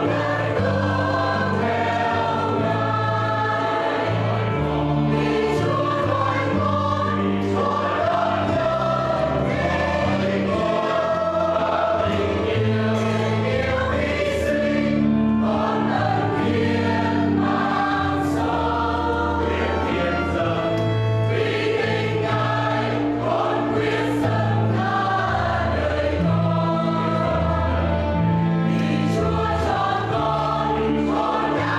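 Church choir of mostly women's voices singing a Catholic hymn in Vietnamese, held notes moving steadily over sustained low notes, with no break.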